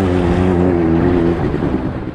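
Engine of a small off-road vehicle running at a steady speed, easing off and sounding rougher near the end.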